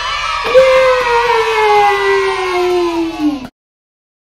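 A woman's voice holding one long note that slowly slides down in pitch, closing a children's song, then cutting off abruptly about three and a half seconds in.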